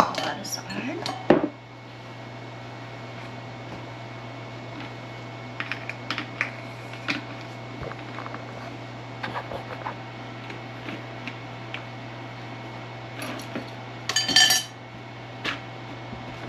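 Plastic spray bottle and funnel being handled on a wooden table while the trigger spray top is fitted: scattered clicks and knocks, one loud knock about a second in, and a short noisy scrape near the end, over a steady low hum.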